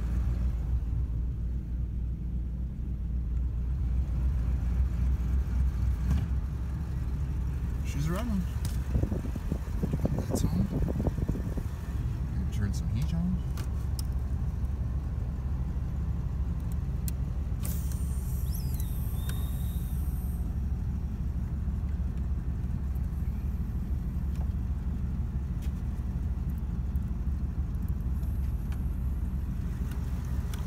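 1985 Oldsmobile Delta 88 engine idling steadily just after a cold start, heard from inside the cabin. It sits at a high idle on the choke and bucks a little.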